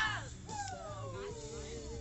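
Background music with a steady low beat, over which a voice slides down in pitch and holds a long note.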